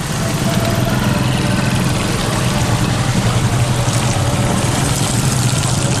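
A vehicle engine running steadily, heard from inside the vehicle as it drives along a wet road, with a continuous low hum under road noise.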